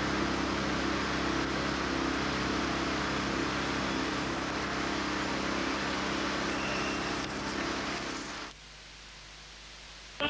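Steady background noise with a low hum and a few faint steady tones, dropping suddenly to a faint hiss about eight and a half seconds in.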